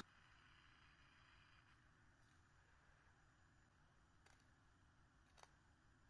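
Near silence: faint room tone with two faint ticks near the end.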